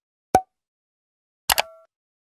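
Sound effects from an on-screen subscribe animation. A short pop comes about a third of a second in. About a second and a half in there is a click with a brief chime as the like icon is clicked.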